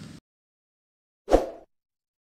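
A single short pop sound effect from an animated outro graphic, with a low thud at its onset and a quick fading tail, about a second and a third in; the tail end of a man's voice stops just at the start.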